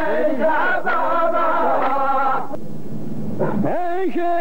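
Rows of men chanting a qalta verse in unison, the chant breaking off about two and a half seconds in. Near the end a single man's voice slides upward in pitch.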